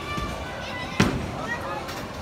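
A single sharp crack of bowling equipment about a second in, the loudest thing here, with a short ringing tail, over voices and background music in a bowling alley.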